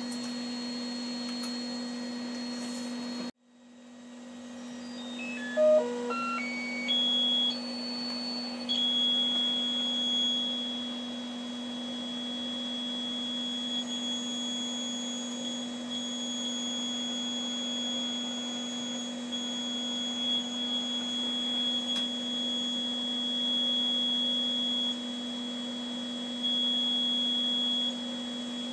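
Radio receiver audio: a steady hum under a high whistling beat note, the 27 MHz test signal picked up by a near-field probe. About three seconds in the sound cuts out and slowly comes back, then a short run of tones steps up in pitch and settles into one steady high whistle that rises and falls a little in level.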